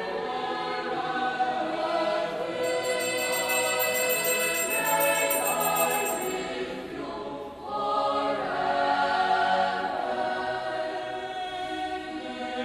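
Sacred choir music with voices holding long, slowly changing chords. A high, bell-like shimmer runs from about three to six seconds in, and there is a brief dip about seven and a half seconds in.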